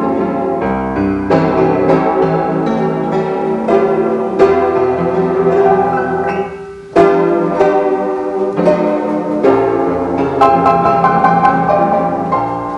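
Upright piano played in a jazz arrangement in the style of 1920s–30s American silent-film pianists, with a steady run of chords and melody. A little past halfway the playing dips briefly, then comes back with a loud chord.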